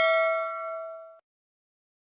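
Notification-bell 'ding' sound effect from a subscribe-button animation: a struck chime that rings on in several steady tones, fades, and cuts off suddenly about a second in.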